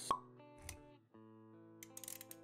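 Intro music with a sharp pop sound effect just after the start and a low thud a little later; the music drops out briefly about halfway through, then comes back with sustained notes.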